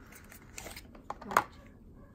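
Cardboard lipstick box scraping and rustling as a lipstick tube is worked out of it, with a short sharp sound a little past the middle. A brief laugh falls in the same stretch.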